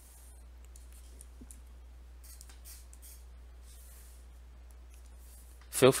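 Faint, scattered clicks and light scratching from a pen stylus on a drawing tablet while the on-screen handwriting is erased and edited, over a low steady hum.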